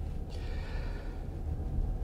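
Steady low rumble in the cabin of a moving Toyota Sienna hybrid minivan, with a soft breath from the driver about half a second in.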